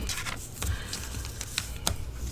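A bone folder scraping along fresh paper creases, with the paper rustling against the cutting mat and a few sharp taps as the tool is set down and lifted.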